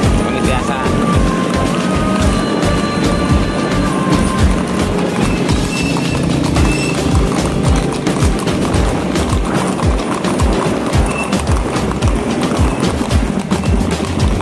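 Background music with a steady beat, and horses' hooves clip-clopping on a paved road beneath it.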